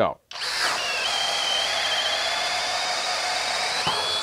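Flex Turbo hammer drill in turbo mode, speed two, drill setting, driving a 1-1/4 inch self-feeding spade bit through a wooden beam under full load. A steady high motor whine with cutting noise starts a moment in and runs on without a break.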